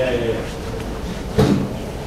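Indistinct voices in a large hall, with a single sharp thump about one and a half seconds in.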